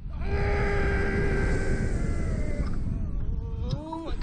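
A rider screams as the slingshot capsule is flung skyward: one long scream held on a steady pitch for nearly two seconds, then a rising cry near the end. Wind rumbles on the ride's microphone underneath.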